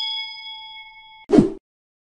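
Notification-bell sound effect from a subscribe-button animation: a bell ding, struck just before, rings out and fades over about a second. A short whoosh follows it.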